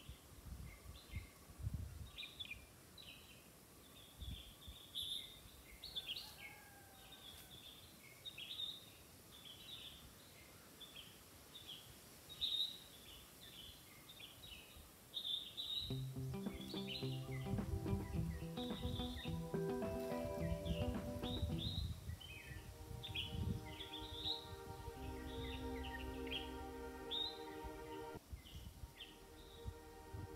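Birds chirping, many short calls a second, all the way through. About halfway in, soft background music with long held notes comes in under the birdsong.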